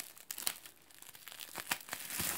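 Plastic bubble wrap crinkling and crackling as a hand grabs it and pulls it out of a plastic storage tub, in a run of short, sharp crackles with a quieter moment about halfway through.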